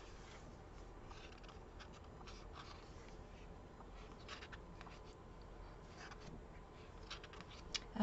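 Faint rustling of paper sticker-book pages being turned and handled, with a few soft paper clicks and crinkles scattered through.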